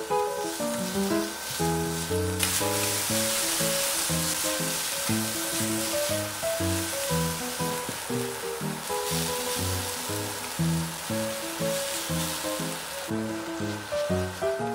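Background music with a quick melody of short notes, over onion slices sizzling as they fry in olive oil in a pan. The sizzle steps up suddenly a little over two seconds in and then holds steady.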